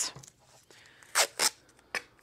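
Masking tape being pulled off its roll: two short rasping peels about a second in.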